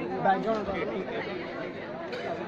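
Indistinct chatter of several people talking at once, with no music playing.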